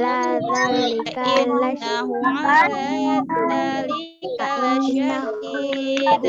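A child's voice chanting Quran verses in a melodic recitation, holding and bending long notes, heard over a video-call connection. The chant breaks off briefly about four seconds in, then resumes.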